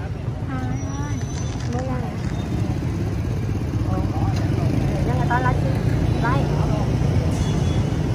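Street traffic: a steady low engine drone that grows louder through the middle and fades near the end, with faint voices of passers-by.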